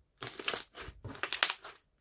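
Hand squeezing and pressing beaded crunchy slime: two crackling squeezes, each a dense run of small pops and crunches lasting most of a second.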